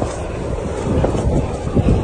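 Wind from a snowstorm buffeting the phone's microphone, a rough, uneven low rumble.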